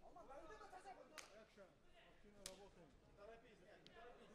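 Three sharp smacks of strikes landing in a fight, a little over a second apart, over faint background voices.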